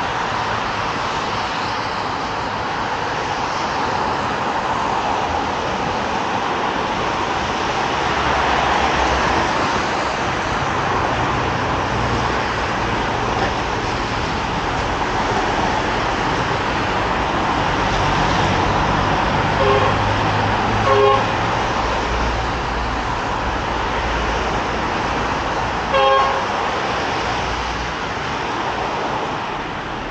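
Steady road traffic noise from cars passing on a multi-lane road, with three short car-horn toots: two about a second apart past the middle, and a third a few seconds later.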